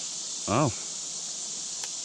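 Steady, high-pitched chorus of insects.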